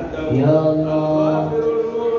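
A man's voice chanting verses into a microphone, holding one long steady note for over a second before moving on.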